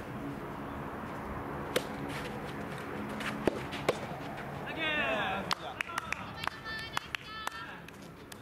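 Soft tennis rackets striking the rubber ball during a rally: several sharp pops a second or two apart, with a quicker run of pops and knocks in the second half, over voices.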